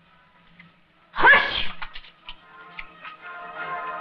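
Orchestral film-score music, with a sudden short shrill cry about a second in that is the loudest sound. The music swells after the cry.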